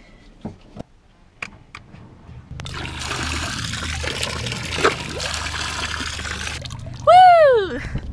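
Bilge pump water jetting out of a new above-waterline through-hull and splashing onto the sea surface, over a low steady hum, starting about two and a half seconds in and lasting about four seconds. A few light clicks come before it, and a short, loud voice-like cry falling in pitch comes near the end.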